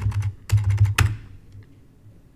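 Computer keyboard typing: a quick run of keystrokes over about the first second, entering a string of zeros, then it stops.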